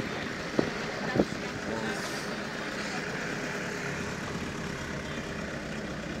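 Steady vehicle and street noise with two sharp knocks, about half a second and a second in.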